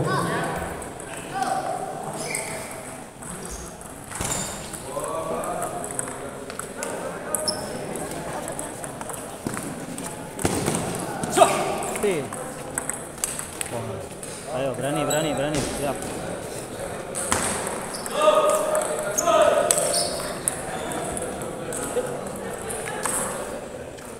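Table tennis ball clicking off the bats and the table during a rally, a series of short sharp knocks, against a background of voices in a large hall.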